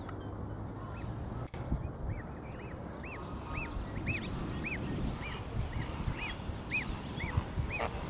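Goslings of domestic geese peeping: a run of short, high calls, each rising and falling in pitch, about two a second, starting about two seconds in.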